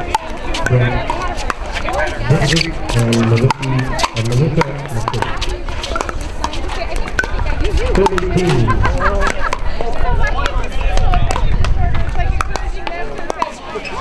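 Nearby voices and background chatter, with many sharp pocks of pickleball paddles hitting the plastic ball on this and surrounding courts.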